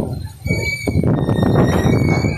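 Strong wind buffeting the phone's microphone: a heavy, uneven low rumble that rises and falls, dropping briefly about a third of a second in.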